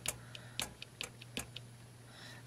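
A few faint, irregular light clicks and taps from a hand handling a small plastic bedside lamp.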